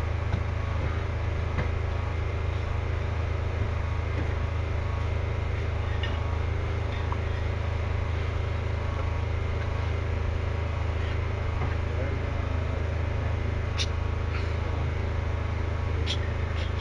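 A steady low hum under a constant hiss, unchanging throughout, with a couple of faint clicks near the end.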